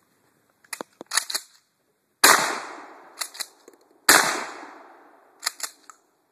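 12-gauge Remington Model 29 pump-action shotgun fired twice, about two seconds apart, each shot followed by a long echoing tail. Short bursts of metallic clicks come before the first shot, between the shots and near the end, as the pump action is worked.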